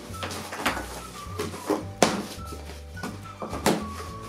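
Background music with a low bass line, over a series of sharp knocks and scrapes from a cardboard box being handled and opened with scissors; the sharpest knock comes about two seconds in.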